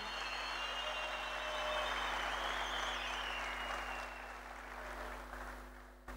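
Large audience applauding, the clapping holding steady, then dying away over the last two seconds.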